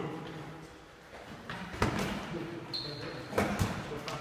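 Boxing gloves smacking in a sparring combination drill: a sharp hit about two seconds in and two quick hits near the end, with a short sneaker squeak on the wooden floor between them, echoing in a large hall.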